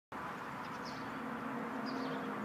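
Faint, steady outdoor background hum with a couple of faint high chirps.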